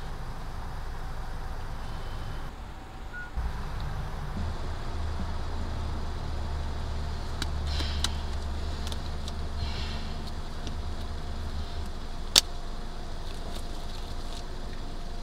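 Steady low rumble of a car engine idling, heard from inside the cabin, growing stronger about three seconds in. Soft rustling of disposable gloves being handled, and a single sharp click near the end.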